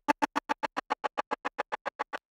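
A resampled lead-synth snippet, built from a vocal sample, played from Ableton Live's Simpler in one-shot mode. Beats warp mode set to preserve sixteenths, with a short envelope, chops it into a rapid, even stutter of short pulses, about seven a second, that grow gradually quieter.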